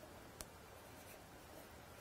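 Near silence: faint handling of a masking-paper cut-out being pressed down onto card, with one light tick about half a second in.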